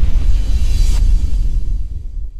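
Cinematic logo-intro music with a deep, heavy rumble underneath. It begins to fade out near the end.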